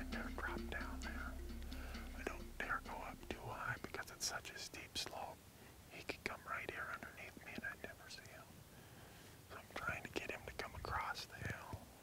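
A man talking in a whisper close to the microphone. Soft background music fades out in the first couple of seconds.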